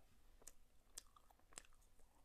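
Faint chewing of soft durian layer cake, with three small wet mouth clicks about half a second apart.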